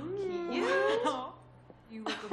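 Young women's voices letting out excited, wordless exclamations with sliding pitch, several overlapping, for about a second, then a short lull.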